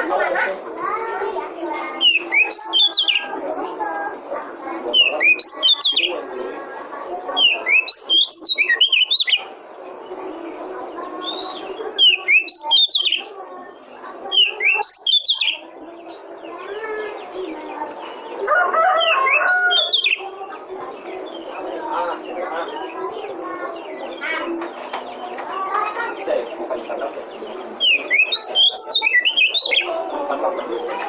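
Oriental magpie-robin (kacer) song: loud bursts of sharp, high, rapid whistled phrases every few seconds, over a continuous lower warbling chatter.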